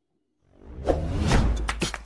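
An edited-in whoosh sound effect that swells out of silence about half a second in, with a deep bass rumble under it, and gives way to a few sharp clicks near the end.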